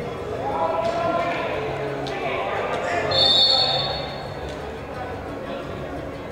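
A referee's whistle blown once, a shrill blast of a little over a second about three seconds in, with people's voices talking around it.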